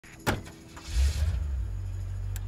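Car ignition key clicking, then the engine starting about a second in and settling into a steady low idle.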